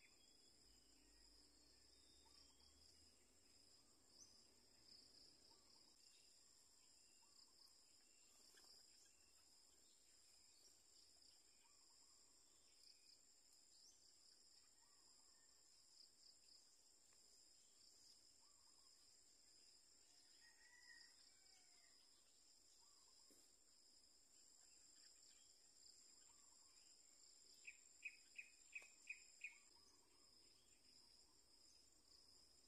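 Faint, steady high-pitched trilling of insects in the vegetation, with scattered faint bird calls. Near the end comes a quick run of six sharp chirps, the loudest sound here.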